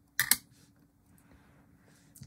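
A quick double click about a fifth of a second in, then faint room tone with a low steady hum.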